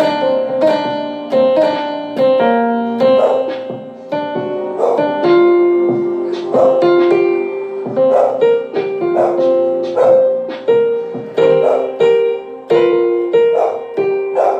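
Electronic keyboard played with both hands in a piano voice: a slow melody of struck, held notes over chords, each note starting with a sharp attack.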